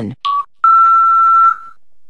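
Radio hourly time signal: a short beep, then one long, slightly higher beep lasting about a second that marks the top of the hour.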